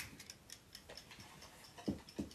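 A mechanical dial timer ticking faintly and evenly after being wound, with a light knock near the end.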